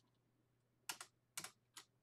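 Five faint computer keyboard keystrokes, starting about a second in, with near silence between them.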